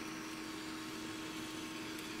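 Steady background hiss with a faint constant hum, unchanging throughout; no distinct handling sounds.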